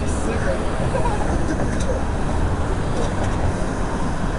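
City street noise: a steady traffic rumble with indistinct voices mixed in.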